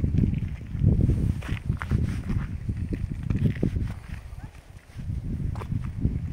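Footsteps scuffing and crunching on a rocky stone path during a downhill walk, with a low, uneven rumble underneath.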